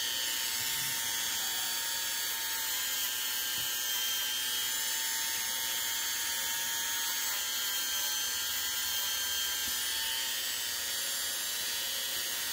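Handheld rotary tool with a small abrasive wheel on a mandrel, running steadily with an even whine.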